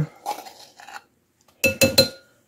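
A measuring spoon tapping about three times against the rim of a metal baking powder can near the end, each tap a sharp clink with a short metallic ring.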